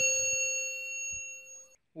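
A single bell-like ding sound effect for tapping a notification bell, one struck tone with several overtones fading away and cut off sharply near the end.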